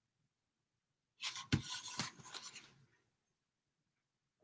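A short scratchy rubbing with a couple of light knocks, starting about a second in and fading out within two seconds: a paintbrush working on a laser-cut wooden cutout that is held and shifted on the work table.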